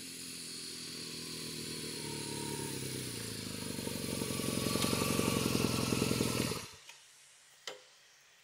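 BMW R nineT boxer-twin motorcycle riding slowly up at low revs, growing steadily louder as it nears. Near the end the engine is switched off abruptly, and a single sharp click follows about a second later.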